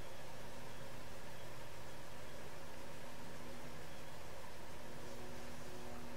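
Steady background hiss with a faint, constant hum underneath: room tone, with no distinct sound events.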